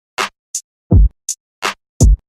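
A sparse drum-machine beat with nothing else playing: two deep kick drums, one about halfway and one at the end, with sharp noisy hits and short high hi-hat ticks between them, and silence between every hit.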